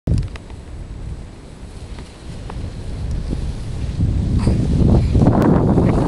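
Wind buffeting the camcorder's microphone, a low rumbling rush that grows louder over the last two seconds, with a sharp click near the end.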